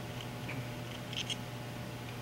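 Faint handling sounds from an ultrasonic hardness tester's probe as its screw-on foot is unscrewed: a few light ticks a little over a second in, over a steady low hum.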